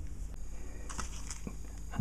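Low steady hum with a few faint light clicks.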